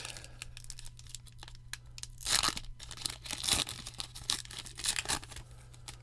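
Foil wrapper of a 2022 Topps Pro Debut baseball-card pack being torn open and crinkled: a run of irregular crackles and rips, loudest two to three and a half seconds in.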